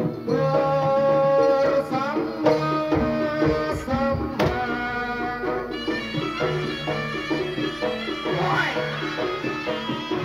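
Traditional Javanese jaranan accompaniment music, a gamelan-style ensemble with hand drums keeping a steady beat under sustained melodic notes, playing loudly and continuously.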